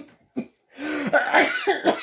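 A man coughing in the middle of a laughing fit: two short coughs, then about a second of continuous raspy coughing laughter.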